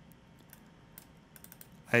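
Faint clicks at a computer: a few single ticks, then a quick cluster of clicks near the end, over low hiss.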